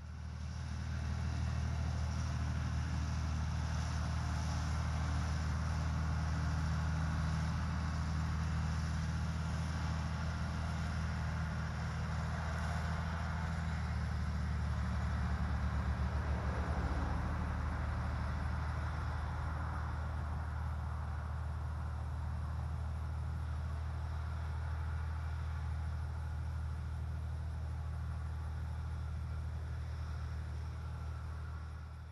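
Farm tractor engine running steadily under load while mowing grass with its mower, a low drone that swells slightly about halfway through.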